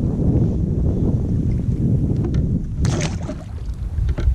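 Wind buffeting the microphone over open water, a steady low rumble, with water lapping at a kayak. A short, sharp noise stands out about three seconds in.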